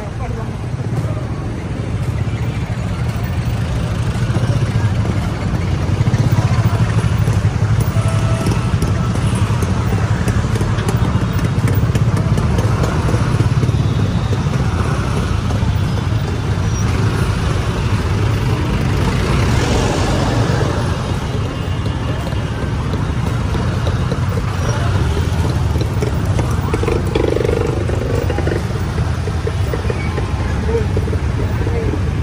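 Busy street traffic: a steady low rumble of nearby vehicle engines, with indistinct voices of people around.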